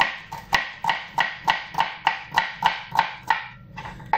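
Chef's knife chopping onion on a plastic cutting board: a steady run of sharp knocks, about three a second, that stops shortly before the end.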